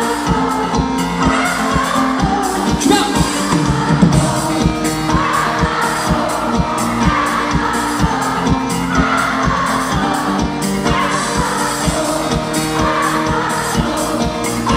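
Live pop band playing: a steady drum beat, bass guitar and lead and backing singing.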